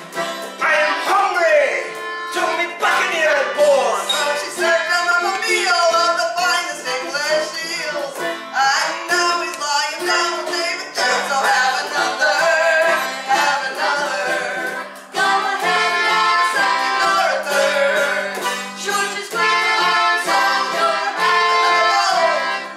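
Live folk band playing an instrumental passage: acoustic guitar, frame drum and an upright bowed string instrument, with the melodic lines sliding and shifting throughout.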